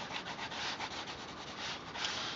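Coloured pencil scratching back and forth on highly textured drawing paper in rapid, even shading strokes.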